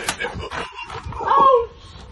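A short yelp about a second and a half in, its pitch bending up then down, after a burst of noise at the start.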